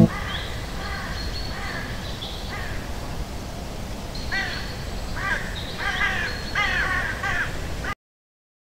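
Repeated bird calls over a steady low background noise. The calls are scattered at first, then come several in quick succession in the second half, and the sound cuts off suddenly just before the end.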